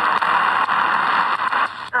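Static hiss from a shortwave pocket radio's speaker while it is tuned between stations; the hiss cuts off abruptly near the end as a station's voice begins to come in.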